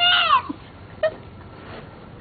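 A toddler's short, high-pitched whining cry that rises and falls in pitch, lasting under half a second, with a brief faint squeak about a second in.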